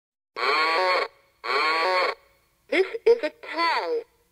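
A sampled voice with no music under it: two long held calls, each a little under a second, then a short phrase with sliding pitch.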